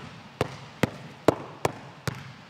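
A basketball dribbled hard on a gym floor, bouncing four times at an even pace of a little over two bounces a second as it is worked in a figure-eight around the legs.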